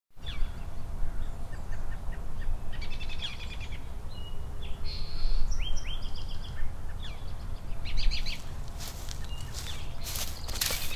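Birds chirping and trilling in short, high calls that come in clusters every second or two, over a steady low rumble of outdoor background noise.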